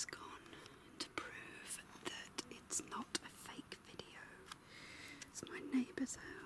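A person whispering.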